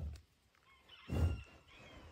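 A bison breathing close to the microphone: two short, low puffs of breath about a second apart, the second louder.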